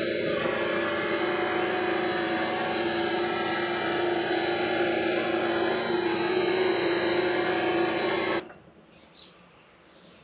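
Vevor MX 400 mini lathe running, a steady motor and gear whine with the spindle turning, which stops suddenly about eight and a half seconds in.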